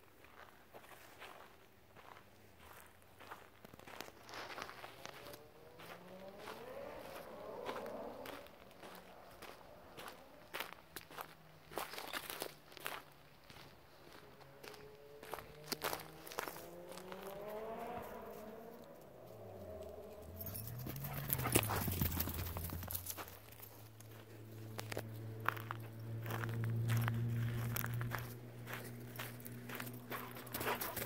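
Footsteps crunching on a dry dirt trail, with many short scuffs and crackles of feet on dry ground and brush. Under them a low hum glides up and down in pitch several times, then holds steady and gets louder over the last several seconds.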